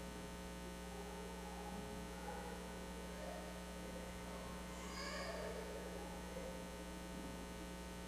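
Steady electrical mains hum in the church's sound system, with faint, indistinct voices from the room and a brief faint high-pitched voice about five seconds in.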